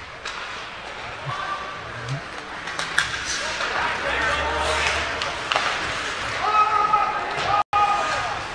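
Ice hockey play in an indoor rink: sticks and puck clacking and knocking, with a steady hiss of skates on the ice and a few shouted voices, one held call near the end.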